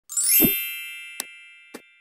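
Logo sting sound effect: a quick rising sweep and low thump open onto a bright ringing chime that slowly fades. Two short clicks follow, about 1.2 and 1.75 seconds in, as the subscribe button and notification bell animate.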